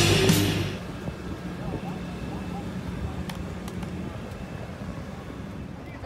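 Heavy rock music fading out within the first second, then a V8 car engine idling with a low steady rumble.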